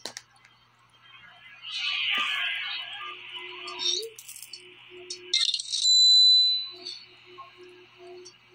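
Film soundtrack with soft music, a noisy swell about two seconds in, and then, loudest of all, a phone notification chime about six seconds in: one bright held ding. The chime is a payment-received alert on the phone.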